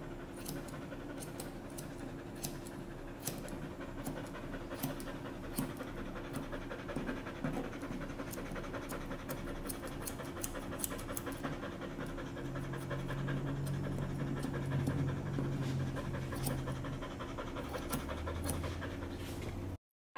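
An Aussiedoodle panting steadily while being groomed, with many short, sharp snips of grooming scissors trimming the hair around its paws, over a steady low hum.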